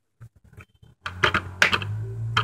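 Small plastic clicks and knocks as a toy accessory is pushed into place on the plastic door of a toy Barbie refrigerator. Faint at first, the clicking turns loud about a second in, over a low steady hum.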